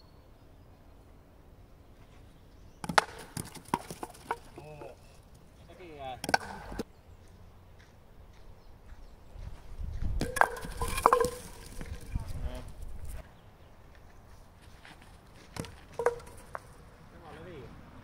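Wooden kyykkä throwing batons landing on the hard court and knocking wooden pins: sharp wooden clacks and clatter in several bursts, the loudest and most ringing about ten to eleven seconds in.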